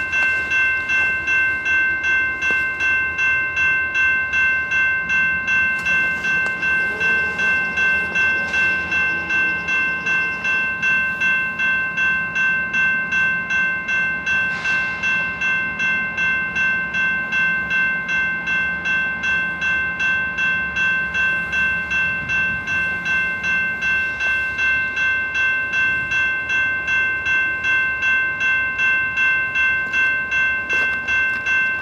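Railroad crossing bell ringing steadily, a little over two strokes a second, each stroke a bright ringing tone. A low steady hum runs underneath from about five seconds in until about twenty-four seconds in.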